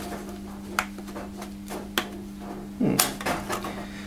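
A few sharp plastic clicks and knocks from a vacuum hose handle fitting being worked by hand: the click ring won't click into place because a stray bit of plastic is in the way. A steady low hum runs underneath.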